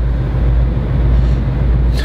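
Mercedes-AMG GT's twin-turbo V8 idling at standstill, a steady low rumble heard from inside the cabin.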